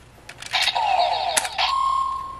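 Gokaiger Mobirates toy with a Kamen Rider Kabuto Rider Key: plastic clicks as the key is worked, then the toy's electronic sound effect. The effect has a burst of falling electronic sweeps about half a second in, and a steady beep tone near the end.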